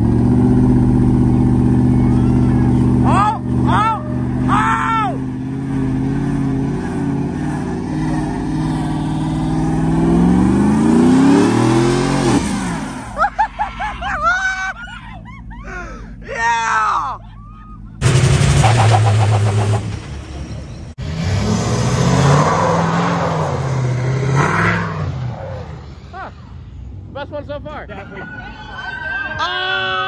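Lifted pickup truck engines running with a deep, steady note; about ten seconds in one revs up, its pitch rising. People on the street yell short calls over it.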